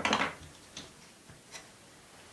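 Art materials handled beside the drawing: a short scraping rustle right at the start, then two light clicks, like oil pastel sticks being picked up and set down.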